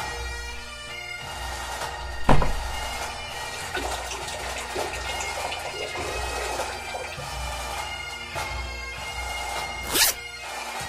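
Bagpipe music with steady held drones, and one loud sharp knock a little over two seconds in.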